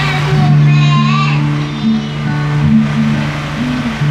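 A young girl singing a gospel worship song into a microphone over an amplified backing track with steady held low notes.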